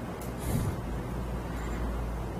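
Steady low hum of background noise picked up by a computer microphone. A short hiss comes near the start, and a soft low thump follows about half a second in.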